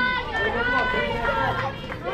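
Several high-pitched voices shouting and calling out at once, the chatter of young players and spectators.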